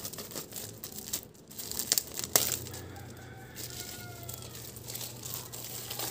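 Clear plastic wrapping crinkling and rustling as an album is handled and slid out of it, with a sharp snap about two seconds in. Near the middle, a faint drawn-out squeak rises over the rustle.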